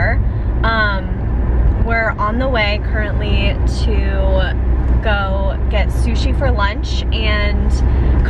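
A woman talking inside a moving car, over the steady low rumble of the car's cabin as it is driven.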